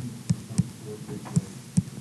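About five short clicks at an uneven pace as the keys of a calculation are tapped in on a computer, over a faint steady hum.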